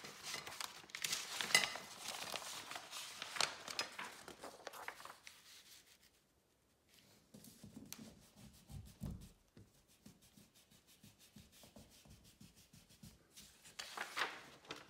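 A sheet of paper rustling as it is handled and laid against a paper-covered wall. After a short pause come a few soft thuds as it is pressed flat, then a run of quick, light shading strokes rubbed along its edge to mask a sharp line.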